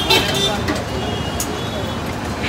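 Busy street-market ambience: a steady wash of background chatter and traffic noise, with a short sharp click about one and a half seconds in.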